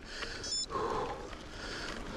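A mountain biker panting hard, worn out from a steep climb, over the low rumble of the bike rolling on a dirt singletrack; a brief high chirp sounds about half a second in.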